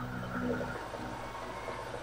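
A pause between spoken phrases, holding only steady background noise: an even hiss, with faint low tones that fade out within the first half second.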